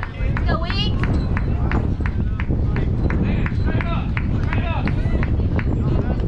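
Wind rumbling on the microphone, with a steady run of sharp hand claps, about three a second, and brief shouted voices.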